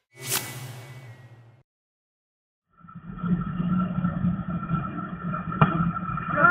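A whoosh transition effect about a third of a second in, fading away over a second. After a gap of silence, steady background noise from the ballpark recording starts about three seconds in, with one sharp click near the end.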